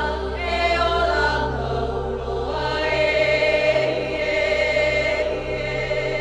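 Singing in long, held notes that waver in pitch, over a steady, low sustained accompaniment.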